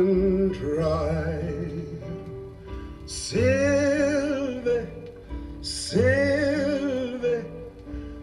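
Male singing from a vinyl record, played back with a Denon DL-102 mono cartridge and heard through a loudspeaker in the room: a softer sung phrase, then two long held notes with vibrato about three and six seconds in.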